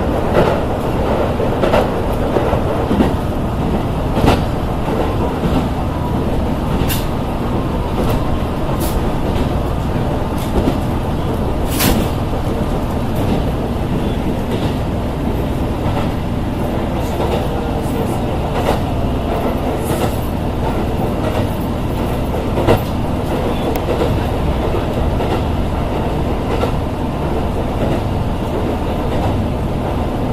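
Diesel railcar running along the line, heard from inside the carriage: a steady rumble of the running gear and wheels on the rails, with scattered sharp clicks and knocks from the track.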